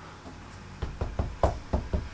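A quick series of dull knocks, starting about a second in, as a fist taps a self-adhesive hexagon notice board flat against a wall to bed its sticky back.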